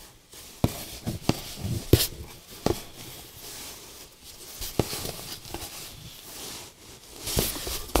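Hands rummaging among folded cloth tablecloths packed in a cardboard box: soft rustling of fabric and cardboard, with several short, sharp knocks and clicks.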